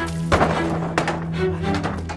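Dramatic background score with a low, steady drone and held tones, with a dull thunk about a third of a second in and another about a second in.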